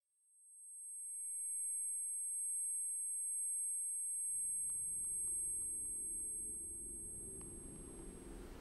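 A high-pitched steady ringing tone, the sound-design effect of ringing ears as someone comes round after passing out, fading in from silence. A low room rumble joins it about halfway, with a couple of faint clicks.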